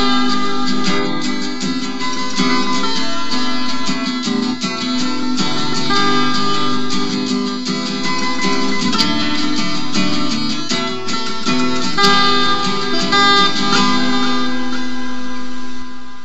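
Instrumental break in a song: guitar strumming chords steadily, with no singing.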